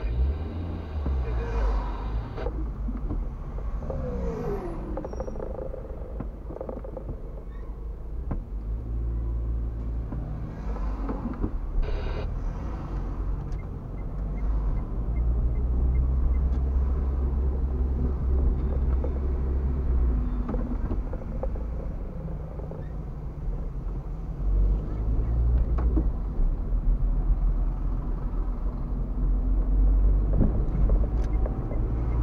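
Car engine and road rumble heard from inside the cabin while driving in city traffic, a deep low rumble that swells and eases with speed. A steady pitched tone stops about two seconds in, and a short tonal sound comes about twelve seconds in.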